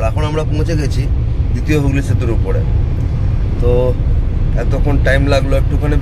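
Steady low rumble of a moving car heard from inside the cabin: engine and road noise that runs on without a break beneath a man talking.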